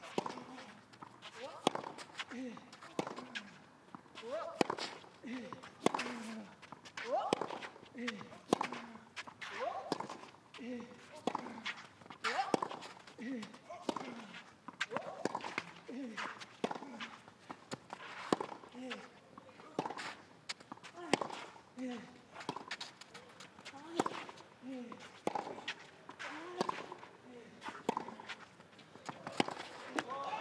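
Tennis rally on clay: the racquets strike the ball back and forth about once a second, each shot with a player's short grunt, along with shoes scuffing on the clay.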